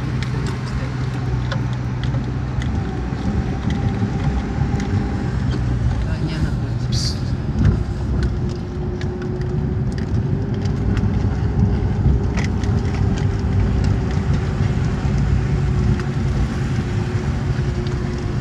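Car engine running and tyres rolling over a concrete road, heard from inside the car's cabin: a steady low hum with scattered small clicks and knocks.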